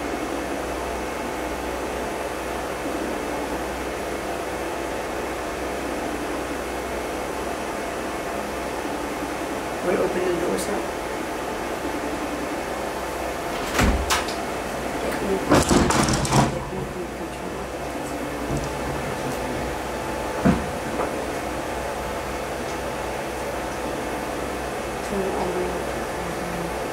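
Steady room hum with a faint constant tone, broken by a few knocks and clicks around the middle and low, faint voices in the background.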